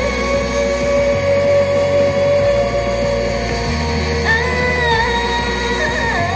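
Loud live rock-styled pop music through a venue's sound system: full band mix with steady bass, a long held note over the first couple of seconds and another, higher held note about four seconds in.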